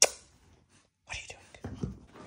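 A dog rolling and wriggling on its back on a shag rug: breathy rustling and scuffing begin about a second in, after a sharp click at the very start.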